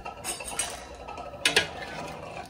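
A utensil clinking against a stainless steel pressure-cooker pot, with one sharp metallic clink about one and a half seconds in over quieter handling noise.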